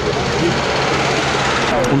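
A van driving past on the street: a rush of tyre and engine noise that swells and then fades near the end.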